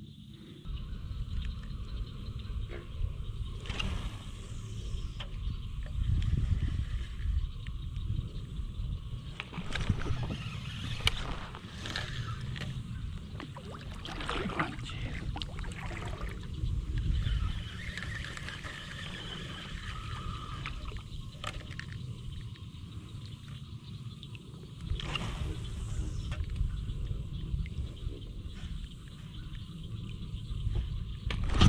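Uneven low rumble of wind on the microphone as a kayak moves across open water, with scattered clicks and knocks, most of them between about ten and sixteen seconds in.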